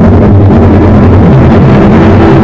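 Amplified violin run through effects, holding a loud, dense, steady drone of layered low sustained tones.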